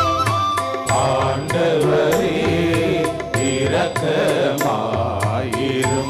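Devotional hymn music with a held melody on an instrument over a steady percussion beat. Singing comes in about a second in and fades near the end, when the instrument melody takes over again.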